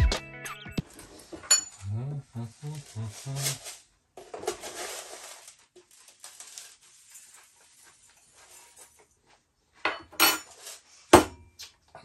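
Knife cutting cabbage on a cutting board and rustling as the cabbage is handled, with two or three sharp knocks near the end.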